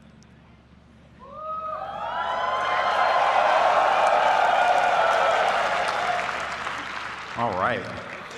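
Large auditorium audience applauding and cheering, with a few whoops. It starts about a second in, swells, then dies away near the end.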